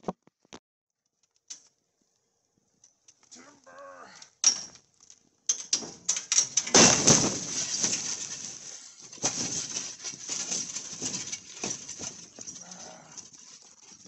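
Steel canopy frame with a torn tarp being tipped off a flatbed utility trailer. A drawn-out groaning creak comes first, then a long scraping crash with its loudest impact about seven seconds in, followed by uneven rattling and scraping as the frame settles.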